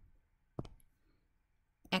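A single short click of a stylus tapping a tablet screen, about half a second in, as a new pen is picked from the drawing toolbar; otherwise very quiet.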